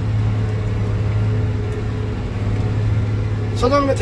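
JCB 3230 Fastrac tractor's 250 hp diesel engine running steadily, heard from inside the cab as an even low drone.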